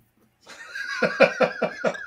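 A man laughing out loud at a joke in a rapid, even run of ha-ha pulses, about seven a second. It starts about half a second in.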